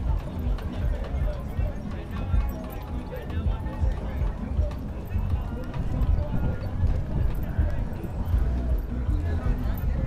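Indistinct chatter of onlookers over background music, with a steady low rumble.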